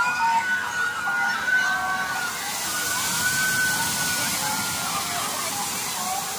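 A large tipping bucket on a water-play structure dumps a cascade of water that crashes and splashes steadily into the pool, the rush building from about two seconds in. Over it, people in the pool give long, high, held screams.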